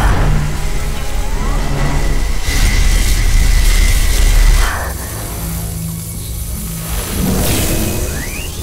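Dramatic action music under a deep, rumbling sound effect of clashing magic energy beams. The rumble cuts off about four and a half seconds in, leaving quieter music, and a swell comes near the end.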